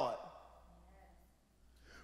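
A man's speaking voice trails off with a short reverberant tail, then a pause of near silence with only a faint low hum of room tone.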